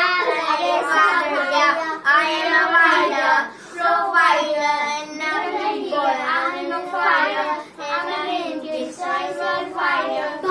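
A small group of children singing a song together, in phrases broken by short pauses for breath.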